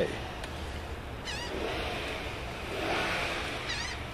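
A bird calls twice outdoors, a short high call bending in pitch, about a second in and again near the end, over a steady low background hum.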